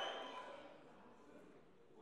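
Near silence in a hall: faint leftover sound dies away in the first half second, then quiet.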